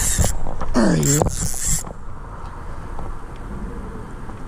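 Spinning reel being worked against a hooked fish. There are two short hissing bursts, one at the start and one just before the two-second mark, and a short grunt-like exclamation about a second in; the last two seconds are quieter.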